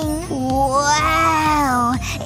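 A cartoon girl's voice holding one long vowel, an 'aaah' or 'ooh' sustained for nearly two seconds, dipping slightly in pitch at first and then held almost level.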